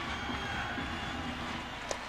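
Steady hockey-arena crowd noise, with a single sharp clack near the end as sticks hit the puck on the faceoff.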